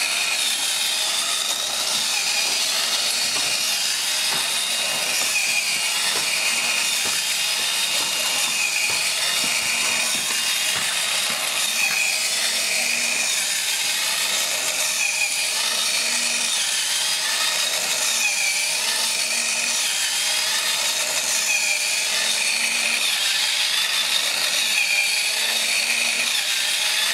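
Small battery-powered hobby motor and gearbox of a 3D-printed walking robot running steadily: a continuous whirring grind of plastic gears, with a faint pattern repeating every second or two as the legs step and the body rocks.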